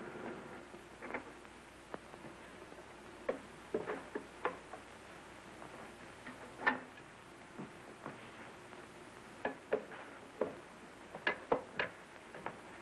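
China dinner plates clinking as they are stacked and put away: about a dozen light clicks at irregular intervals, over a faint steady hiss.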